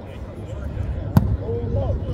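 A single sharp thud of a football being kicked, about a second in.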